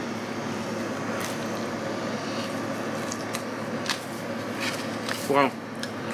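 Steady background noise with a few faint soft clicks of a man chewing a bite of sourdough garlic bread; near the end he says "wow".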